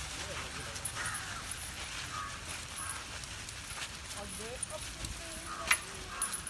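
Faint, distant human voices over outdoor background noise, with one sharp click near the end.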